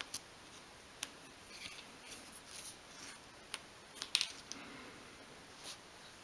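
Faint scraping and scattered light clicks as a thin wooden stick scrapes excess glue out of a small glued wooden joint, the stick tapping against the wood. The loudest clicks come a little after the midpoint.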